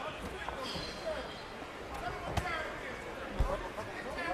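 Boxing gloves landing on a fighter at close range in the corner: scattered punch thuds, with a sharp smack about two and a half seconds in and the loudest, a deep thud, about a second later. Voices from the crowd and corners shout under it.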